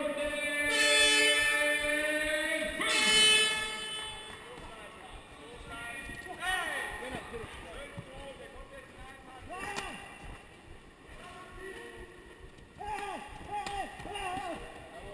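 Kickboxing arena sound: a loud, held, pitched tone fills the first few seconds and stops about four seconds in. After that there is scattered shouting from the crowd and cornermen as the round is fought.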